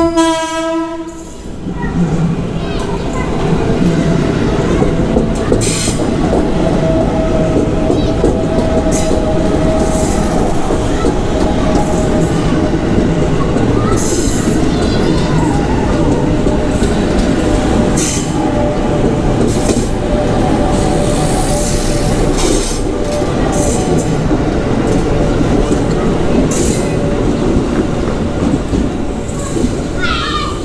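Horn of a JR 205 series electric commuter train ending about a second in, then the train passing close by: a long, loud rumble of wheels on rail with scattered clicks over rail joints and a steady whine above it.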